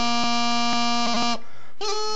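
Practice chanter playing a pipe tune: a long, buzzy low note with quick grace-note flicks. The notes break off about a second and a half in and start again just before the end.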